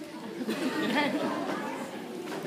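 Children's voices chattering and calling out at once in a large hall, one voice rising above the rest about halfway through.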